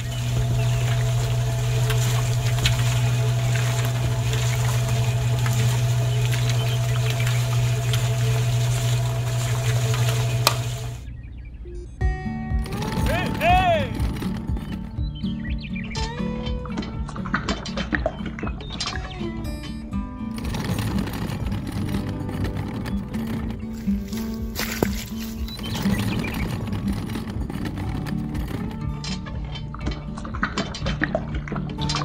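Small electric motor of a miniature model concrete mixer switched on with a click and running with a steady hum, cutting off after about eleven seconds. Background music plays for the rest.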